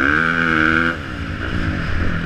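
Dirt bike engine revving hard under throttle. About a second in the throttle is rolled off and the pitch sinks, then it picks up again near the end.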